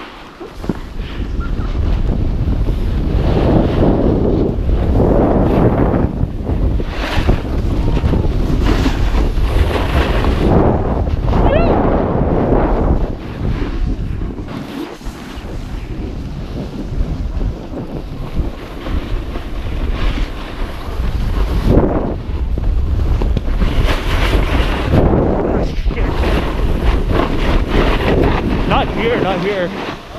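Wind rushing over the microphone of a camera riding down a ski slope, mixed with the scrape of a snowboard's edges on packed snow, rising and falling as the rider turns.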